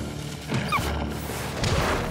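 Cartoon score music, with a short falling yelp from the wolf about three-quarters of a second in, as the muskox knocks it over, and a sudden noisy thump about 1.7 seconds in.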